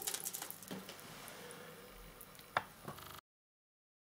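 Thin stream of tap water running into a bathroom sink: a faint steady hiss, with a few light clicks, the sharpest about two and a half seconds in. It cuts off suddenly to silence about three seconds in.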